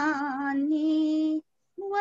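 A woman singing alone, holding a long note with vibrato that breaks off about one and a half seconds in; a new sung note starts near the end.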